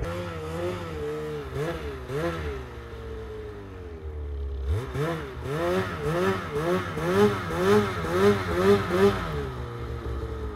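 Snowmobile engine revved in short throttle blips while the sled is worked through deep snow. The revs swell and drop a few times, settle low for a moment, then come quickly at about two a second in the second half.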